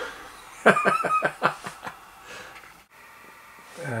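A man laughing briefly, a short run of chuckles about a second in, followed by low room tone.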